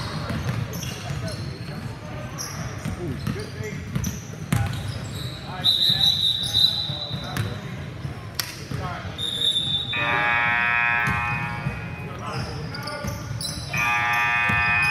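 Basketball gym sounds: a ball being dribbled and players' and spectators' voices echoing in the hall. A referee's whistle gives a steady high tone for about a second, and a short one later. Near the end, an electric buzzer sounds for about two seconds, the loudest sound here.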